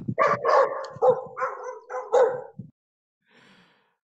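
Dogs barking in a rapid run of sharp barks for about two and a half seconds, then stopping. The barking comes through a participant's open microphone on a video call.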